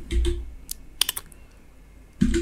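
A few sharp clicks of computer keyboard keys, clustered about a second in.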